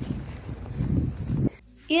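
Low, uneven rumbling of wind and handling noise on a phone microphone carried outdoors. It cuts off abruptly about a second and a half in to quiet room tone.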